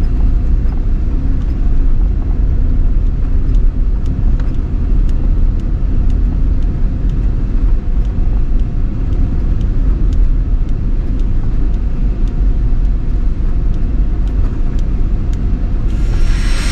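Mitsubishi Pajero turbo-diesel SUV driving slowly along a dirt track: a steady low rumble of engine and tyres, with occasional faint ticks.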